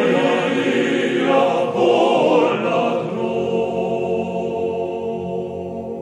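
Mixed choir singing in several voice parts; about halfway through, the voices settle on a long held chord that slowly fades.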